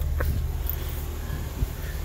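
Steady low rumble of an idling engine heard inside the truck's sleeper cab, with a short click just after the start and a low knock near the end.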